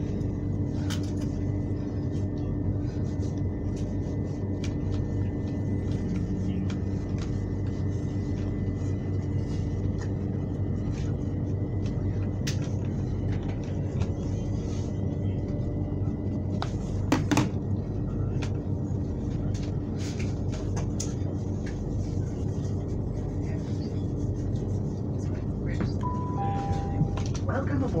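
Electric passenger train running, heard from inside the carriage: a steady low rumble and hum from the wheels and motors, with a short burst of clicks a little past halfway. Near the end a two-note falling chime sounds, the signal that comes before an onboard announcement.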